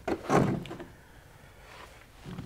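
A short scraping, rustling noise about half a second in that fades within a second: a removed plastic interior trim panel being handled and set down.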